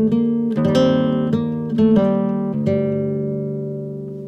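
Background music on acoustic guitar: plucked notes and chords struck every half second or so, each ringing and fading. The last chord rings out through the second half.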